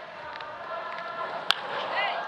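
Steady stadium crowd noise, then about one and a half seconds in a single sharp crack of a wooden baseball bat striking a pitch, sending a pulled ground ball through the left side of the infield.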